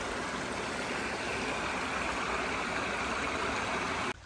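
Shallow creek water running over and around rocks close by, a steady even wash.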